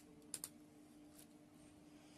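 Near silence with a faint steady hum, broken by two light clicks close together about a third of a second in and a fainter one a little after a second: handling noise from a plastic-cased conductivity meter and its probe.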